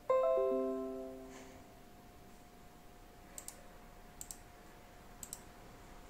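Windows device-disconnect chime: a short run of soft tones stepping down in pitch, sounding as a USB device is removed from the hub, fading out over about a second and a half. Later come three quick double clicks.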